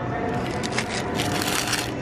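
Thin plastic wrapping on packs of courgettes crinkling and crackling as they are handled and swapped on the shelf, densest a second or so in.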